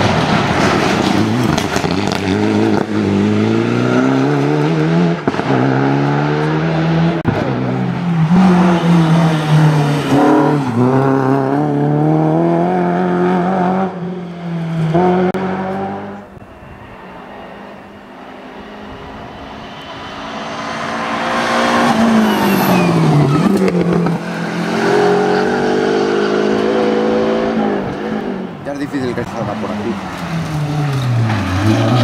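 A Mitsubishi Lancer Evolution rally car's turbocharged four-cylinder engine is driven hard, the revs climbing and dropping at each gear change as it comes past. After a quieter lull about halfway through, a second rally car's engine grows louder, again rising and falling with its gear changes.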